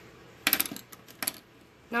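A few light clicks and clinks of small hard objects handled on a hard surface, like makeup tools being set down: a quick cluster about half a second in and two more near the middle.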